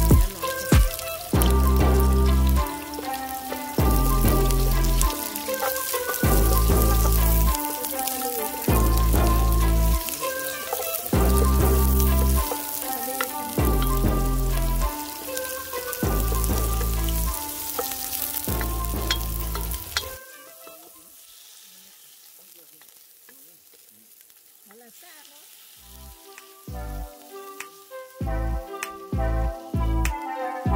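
Chopped onion and garlic sizzling in hot oil in a pot, stirred with a wooden spoon. Background music with a steady bass beat plays over the sizzling and is the loudest sound. It stops about 20 s in, leaving the frying alone and much quieter, and returns near the end.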